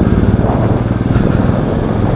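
Royal Enfield motorcycle engine running steadily at low road speed, a rapid even exhaust beat, picked up by a phone mounted on the rider's helmet.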